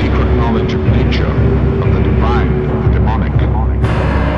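Dark ambient soundtrack: a loud low droning rumble with a few steady held tones, wavering voice-like cries gliding up and down over it, and a sudden noisy burst near the end.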